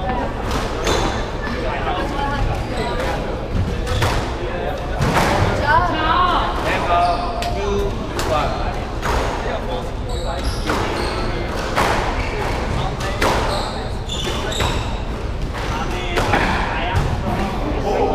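A squash rally: the ball is struck by rackets and smacks off the court walls again and again at an irregular pace, with sneakers squeaking now and then on the wooden floor.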